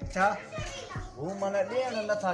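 A voice speaking in short, lively phrases, with music underneath.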